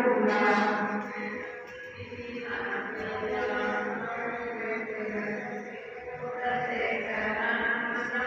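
A voice chanting a sustained devotional recitation, Sikh Gurbani chanting, heard at a moderate level without a break.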